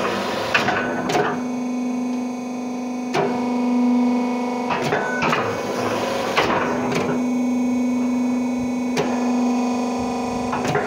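Rotary fly ash brick making machine running: a steady electric motor and hydraulic hum, with sharp metallic clanks every one to three seconds as the press works.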